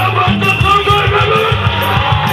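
Live band playing on stage, with electric guitars and keyboard over a moving bass line.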